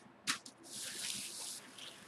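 A printmaking baren rubbed across baking parchment paper laid over a linocut print: a small tap, then a soft hissing swish lasting about a second.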